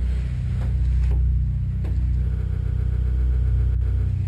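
A steady low droning hum, with three faint thuds in the first two seconds.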